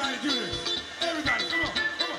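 A live band playing a dance number: a steady kick-drum beat with voices over it.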